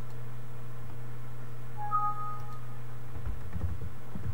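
A steady low hum, with a short two-tone beep about two seconds in.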